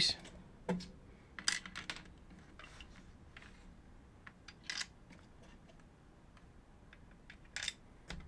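Small screws and a screwdriver clicking and tapping against the plastic shell of a Philips VCR-format video cassette as it is screwed back together: a handful of light, scattered clicks with gaps between them.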